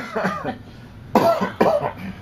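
Two short, sharp vocal bursts from a person, about half a second apart, a little past a second in.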